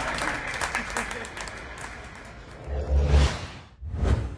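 A noisy crowd-like hubbub with many claps fades away over the first two seconds. About three seconds in comes a deep bass hit with a rising whoosh, a TV show's transition sting, and a second hit with a whoosh lands at the very end.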